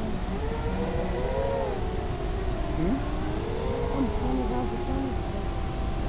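Whine of a small FPV quadcopter's electric motors and propellers, its pitch rising and falling as the throttle changes, over a steady hiss.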